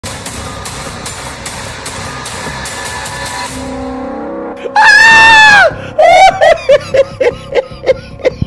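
Background music with a light regular beat, then a loud, high-pitched yell held for about a second that drops in pitch as it ends. A quick run of short, high vocal bursts, like laughter, follows.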